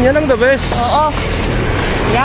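A person says a word and keeps talking briefly over a steady low rumble. Packaging rustles in a short burst about half a second in as egg cartons are handled in the bin.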